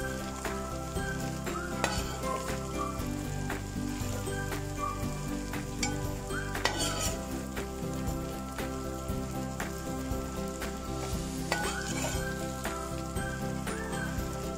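Vegetable and egg noodles stir-frying in a steel pan: a steady sizzle, with repeated scrapes and clinks of a metal spatula against the pan as the noodles are tossed.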